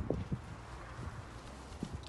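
Picked green tomatoes dropping into a plastic bowl: a few quick knocks at the start and one more near the end, over a low steady rumble.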